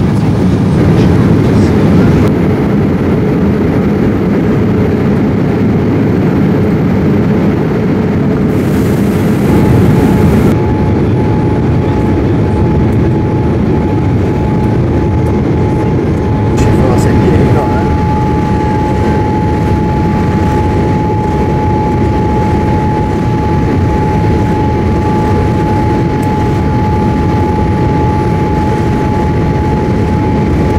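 Steady cabin noise of a Boeing 787 airliner in flight on its approach, the engines and airflow heard as a constant deep rush. A steady mid-pitched whine joins about a third of the way in.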